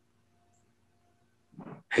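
A pause with only a faint steady hum, then near the end a man's voice breaks in with a short, loud syllable as he resumes talking over a video call.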